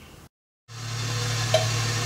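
Faint room tone breaks off into a short dead gap at an edit. After it comes a steady low hum with a hiss over it, like a fan or other electrical equipment running.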